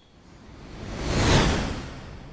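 Whoosh sound effect for a sparkling teleport, swelling to a peak just past the middle and then fading, with a second whoosh beginning to build near the end.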